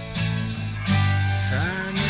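Music: the instrumental opening of a hard rock song, a guitar playing a melody with pitch slides over sustained bass notes, with no vocals yet.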